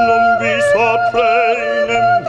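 Operatic singing: a woman's voice with wide vibrato sustains notes over a second, steadily held note, with short breaks between phrases.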